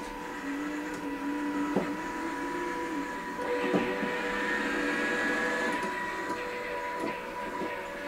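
Small electric drive motors of a wheeled Arduino line-following robot whining as it drives, the whine shifting pitch a few times, with a couple of short clicks.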